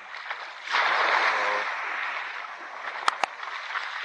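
Small sea wave washing in over rocks and pebbles: a sudden surge of hiss less than a second in that slowly fades. Two sharp clicks close together near the end.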